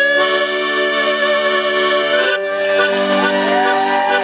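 Piano accordion playing sustained chords, moving to a new chord a little past halfway.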